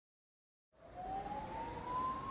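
Silence, then about two-thirds of a second in a single thin tone fades in and slowly rises in pitch over a faint hiss.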